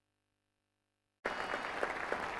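Near silence, then applause cuts in suddenly just over a second in: many hands clapping at once.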